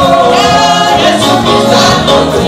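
Gospel music: several voices singing together into a microphone, with a band playing along.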